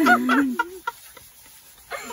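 A woman's short, loud, wavering laugh, followed by a few faint clicks.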